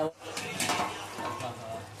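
Steel spoon clinking and scraping against a steel plate and cooking pot as mutton curry is stirred.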